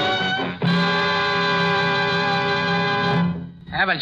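Radio-drama music bridge: a few short chords, then one long held chord that cuts off after about three seconds.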